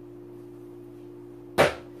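Steady low electrical hum, with a single sharp knock about one and a half seconds in as a hand reaches for and takes hold of a cardboard toy box.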